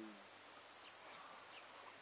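Near silence: faint outdoor background with a few high, short bird chirps about one and a half seconds in.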